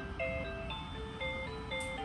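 Battery-powered crib mobile's music box playing an electronic lullaby: a simple melody of short, evenly paced single notes, about four a second.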